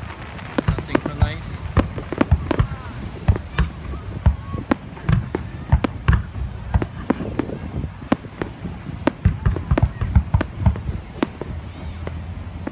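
Fireworks going off: a dense, irregular run of sharp bangs and crackles, several a second, with a low rumble between them.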